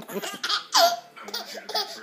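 Baby laughing in short bursts, with one squeal falling in pitch a little under a second in, the laughter dying away near the end.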